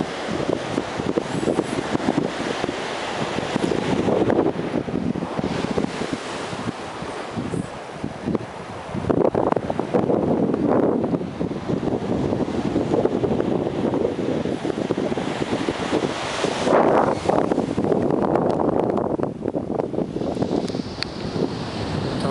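Strong wind gusting over the microphone, with Atlantic surf breaking in the background.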